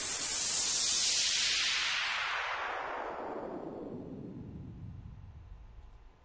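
A synthesized noise sound played back in FL Studio through Fruity Parametric EQ 2, its band 6 frequency automated downward. It is a falling sweep that starts suddenly as a bright hiss and darkens steadily into a low rumble while fading over about six seconds.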